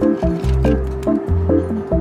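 Background music: a soft instrumental track with a steady bass line under short, quickly changing higher notes.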